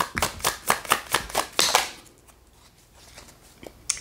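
A deck of tarot cards being shuffled by hand: a quick run of card flicks and slaps for about two seconds, then the shuffling stops and it goes quiet.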